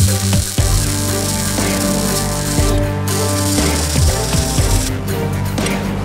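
Arc welding crackle on steel box-section tubing: a run of about three seconds, a short break, then a second run that stops about a second before the end. Background music with steady bass notes plays throughout.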